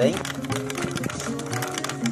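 Background music with sustained notes over rapid light clicking of ice cubes stirred in a glass mixing glass, chilling it before the drink is mixed.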